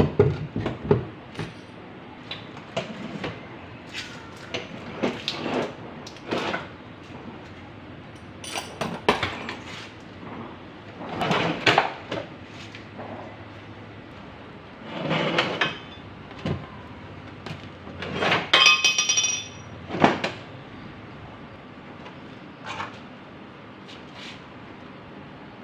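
Irregular metal clanks, knocks and scrapes from a bare steel trike frame being lifted, shifted and set over a motorcycle engine. One clank about two-thirds of the way through rings on briefly.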